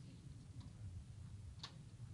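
Quiet room tone with a low, steady hum, broken by two faint clicks: a soft one about half a second in and a sharper one near the end.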